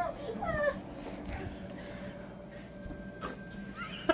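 A short, high whimper that falls in pitch, right at the start, followed by a quiet room with a faint steady hum.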